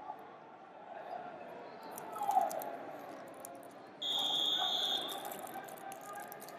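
A referee's whistle blown once, about four seconds in: a steady high tone lasting about a second that stops the wrestling action. Under it is the hall's background of distant voices.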